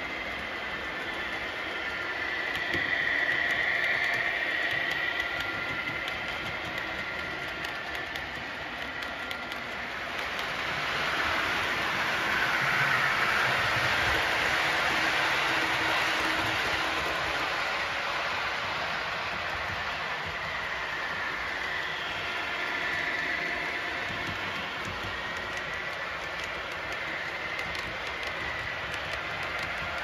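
Model trains running on a model railway layout: a steady rattle of wheels on track with a faint motor whine. It grows louder in the middle as the Blue Pullman model train set passes close by.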